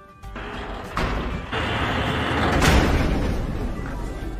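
Drama soundtrack: a swelling rush of noise that builds in steps, peaks about three seconds in, then eases off.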